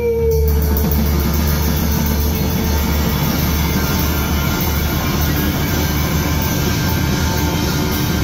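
Live rock band playing loud and steady: electric bass and a drum kit with regular cymbal hits. A long held note from the female singer trails off just at the start.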